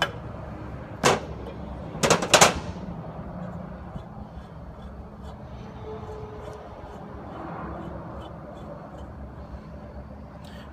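Three sharp metal clanks with a short ring, one about a second in and two close together around two seconds in, from steel rod-rotator parts being knocked and handled on a steel workbench, over a steady low hum.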